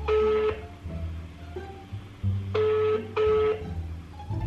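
Telephone ringback tone in the double-ring pattern: the second ring of one pair at the start, then a full pair of short ringing tones about two and a half seconds in, as the outgoing call rings unanswered. Background music plays underneath.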